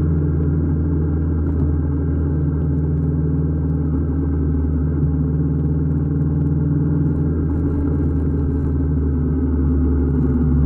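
Honda parallel-twin motorcycle engine running at a steady cruise, a constant low drone that holds unchanged in pitch and level.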